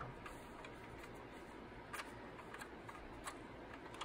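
Paper towel and fingers working on a hard plastic toy part, mostly quiet, with a few faint light ticks of plastic about two to three seconds in.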